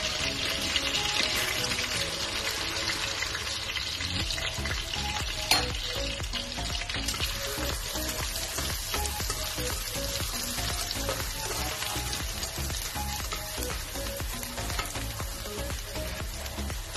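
Butter and small chopped bits sizzling in a hot nonstick wok while a spatula stirs them. The sizzle is strongest in the first few seconds, with one sharp tap about five and a half seconds in.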